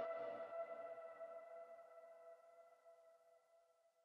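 The closing synth chord of a synthwave beat ringing out and fading, several steady tones dying away to nothing about three seconds in.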